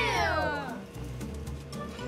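A short, high cry that falls in pitch and fades within the first second, much like a cat's meow, over steady background music.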